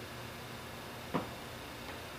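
Quiet room tone with a steady hiss and a single short click a little past a second in.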